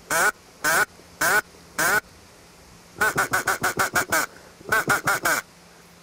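Hand-held duck call blown to imitate a duck's quacking and lure ducks to the decoys: four separate quacks, then a fast run of about nine quacks and a shorter run of about five.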